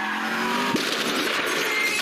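Film car-chase sound effects: car tyres squealing with a slowly falling whine over a steady rush of vehicle noise, as a car smashes through debris.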